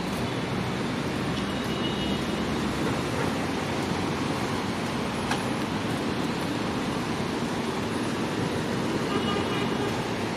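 Steady urban background noise: traffic with indistinct voices, and a brief click about five seconds in.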